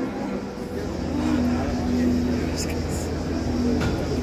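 A low, steady drone from the band's stage rig: a deep hum comes in under a second in and a held pitched note sits above it, over the noise of the crowd.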